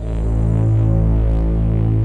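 A deep, loud soundtrack drone of stacked low tones that starts abruptly and throbs slowly, swelling about once a second.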